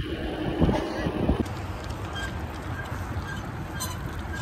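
Wind rushing and buffeting over the microphone of a camera carried on a moving bicycle, as a steady gusty rumble.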